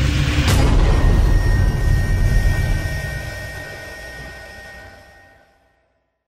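A transition sound effect: a deep, noisy swell with a sharp hit about half a second in and steady ringing tones above it, fading away over about five seconds.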